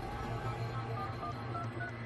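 Touch-tone telephone keypad dialing: a series of short beeps over a low, steady musical drone.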